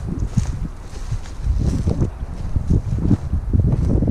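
Wind buffeting the camera microphone: an uneven, gusty low rumble that rises and falls.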